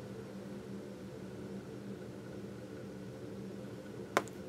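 Quiet, steady room tone: a low hum with a faint hiss, unchanging and without distinct events.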